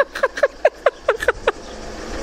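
Hearty laughter: a quick run of short 'ha' bursts, each falling in pitch, about five a second, dying away after about a second and a half. A low car engine rumble comes up near the end.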